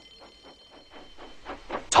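Faint, quick, rhythmic steam-locomotive chuffing, with a thin steady high alarm tone that stops about a second in.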